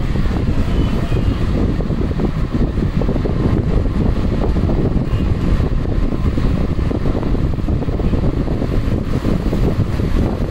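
Multi-needle computerized embroidery machine running and stitching: a loud, steady, fast clatter.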